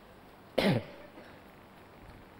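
A single short cough, falling in pitch, a little over half a second in.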